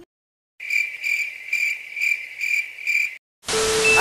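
Cricket chirping, a steady high trill pulsing about twice a second for some two and a half seconds, starting and stopping abruptly against dead silence as an edited-in sound effect. About three and a half seconds in, a loud burst of hiss like static follows.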